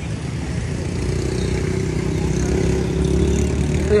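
A motorcycle engine running steadily close by, growing a little louder from about a second in, over a low rumble.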